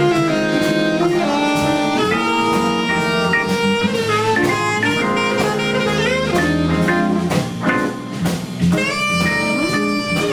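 Live jazz-blues band playing an organ blues: an alto saxophone plays a melodic line over a Hammond SK1 organ, electric guitar and drum kit.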